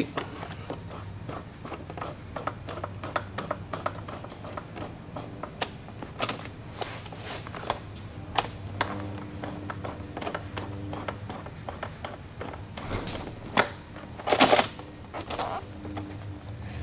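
Hex key working the seat-mounting bolts of a Yamaha R6, and the seat being handled: a run of small metallic clicks and taps, with a few louder knocks and a longer rustle near the end as the seat comes off.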